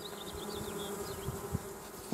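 Honey bees buzzing at the hive entrance, a steady hum.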